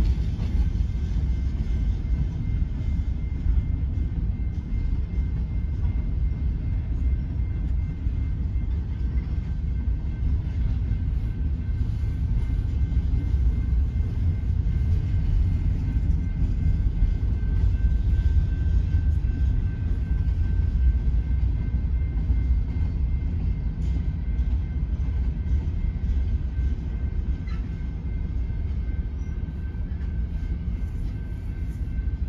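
Freight train of covered hopper cars rolling past close by, a steady low rumble of wheels on rail, with faint steady high tones above it.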